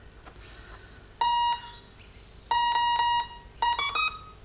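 Brushless ESC startup tones, sounded through the motor as the battery is connected: one beep, then a run of closely spaced beeps, then a short rising pair of notes near the end. The tones signal that the ESC has powered up and armed with the throttle at zero, a happy sound telling that all is good.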